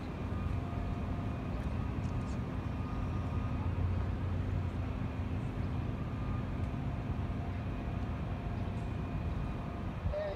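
A steady low engine hum, running evenly with no sudden sounds.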